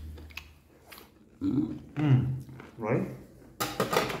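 A man eating pig intestine, which he calls very crunchy, with a few short spoken words between mouthfuls. About three and a half seconds in there is a brief, sharp clatter.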